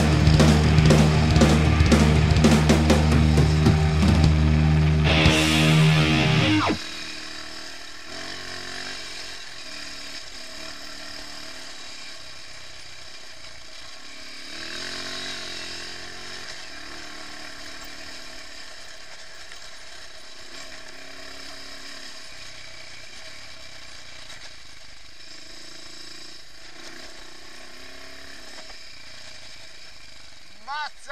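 Loud rock music with drums that cuts off abruptly about seven seconds in, leaving the quieter onboard sound of an off-road motorcycle climbing a dirt track: the engine running with its note rising and falling now and then, under steady wind noise.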